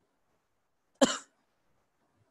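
A single short cough from a man near the microphone, about a second in.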